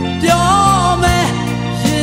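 Late-1980s Burmese pop song playing: full band music with held melody notes that bend in pitch over steady bass and chords.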